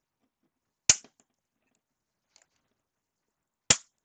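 Two sharp cracks about three seconds apart as pliers snap the hard clear plastic of a PSA graded-card slab being broken open.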